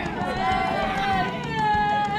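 Young women whooping and shrieking in high, drawn-out calls, about two long calls, over a low rumble.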